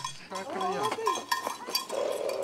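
A small bell on a goat's collar clinking irregularly as the goat trots, with a brief voice in the background in the first second.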